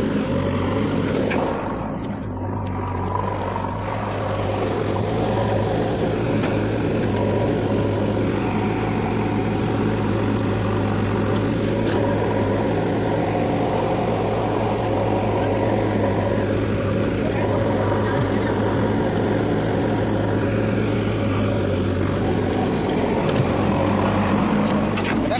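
JCB backhoe loader's diesel engine running steadily as a continuous low hum, dipping slightly in level about two seconds in.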